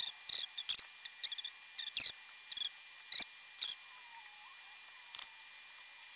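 Faint, irregular light clicks and ticks, typical of fingers tapping a phone's touchscreen keyboard while a text is typed.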